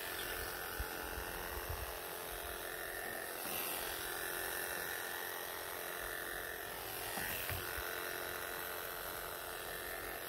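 Wahl KM2 electric animal clipper with a #40 surgical blade running with a steady buzz as it shears a long-haired Persian cat's coat. A few soft low thumps come through over the buzz.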